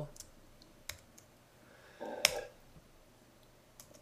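A few quiet, scattered computer keyboard keystrokes, single clicks spaced about a second apart, the loudest about two seconds in.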